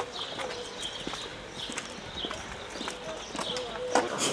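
Footsteps of several people walking on pavement: an irregular run of short clicks from hard-soled shoes.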